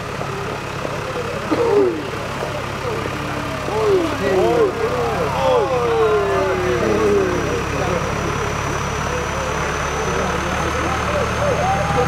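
Diesel engine of a Steyr 9094 tractor running steadily at low speed as it tows a passenger wagon past, getting louder toward the end as it comes close. People's voices can be heard over it.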